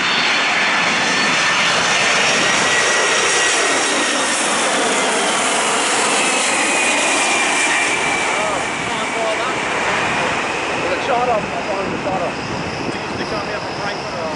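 Boeing 767-300's twin turbofan engines passing low overhead on approach, gear down: a loud, steady roar with a whine that glides down in pitch as the jet moves away, easing a little in the second half.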